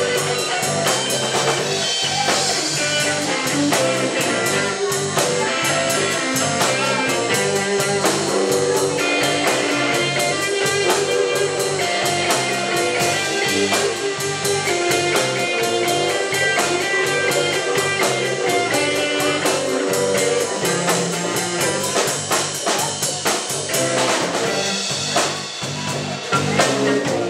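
Live blues band playing an instrumental passage: electric guitar over electric bass and a drum kit, with no singing.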